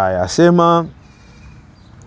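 A man's voice chanting Quranic Arabic, with two steady held syllables in the first second, followed by a pause.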